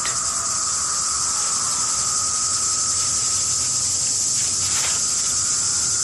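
Chorus of 17-year periodical cicadas: a steady, high-pitched buzz, the males' mating song made by vibrating their abdomens, with a fainter, lower steady drone beneath it.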